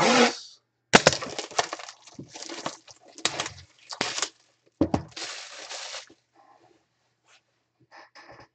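Plastic shrink-wrap being torn and crinkled off a collectibles box, with sharp crackles and snaps, stopping about six seconds in.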